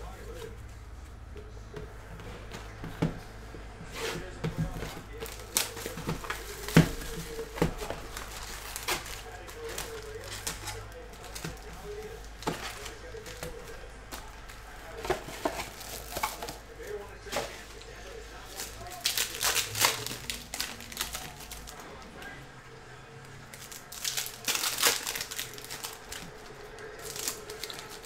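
Foil trading-card pack wrappers crinkling and rustling as a box of packs is emptied and handled, with scattered sharp clicks and taps. Denser runs of crinkling and tearing come about two-thirds of the way in and again near the end as a pack is opened.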